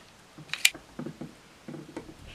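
Small handling noises of wires and a hand tool on a workbench: one sharp click about two-thirds of a second in, then a few soft knocks and rustles as the wire ends are twisted together.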